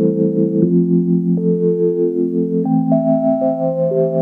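Instrumental song intro of sustained electronic keyboard chords, the chord changing every second or so.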